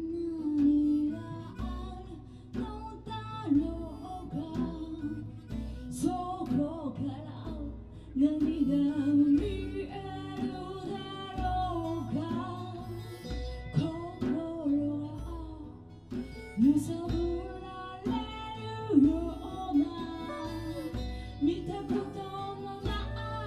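Live acoustic band playing: a woman singing over several strummed acoustic guitars.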